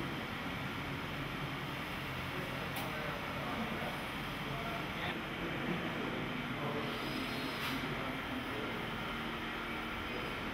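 Steady room ambience of a large hall: an even rumble and hiss with a faint low hum, broken by two faint clicks.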